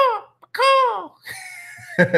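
A man's voice letting out two short, high-pitched whoops, each falling in pitch, followed by a softer breathy sound.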